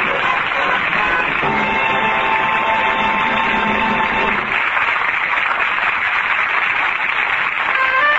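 Band music playing over the steady noise of a cheering stadium crowd, a football-game sound effect in a lo-fi old radio recording.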